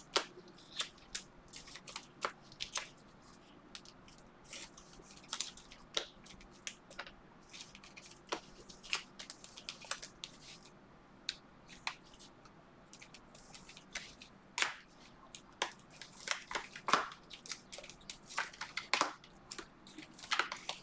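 Hands flipping through a stack of Panini Prizm basketball trading cards: cards slide and flick against one another in irregular soft clicks and snaps. The clicks come faster and louder in the last few seconds.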